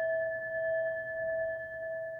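A struck metal bell rings out in a clear tone of two pitches, swelling and dipping slowly in loudness and fading somewhat near the end.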